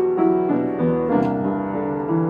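Upright piano being played: a flowing passage of notes in the middle register, one note or chord following another every few tenths of a second.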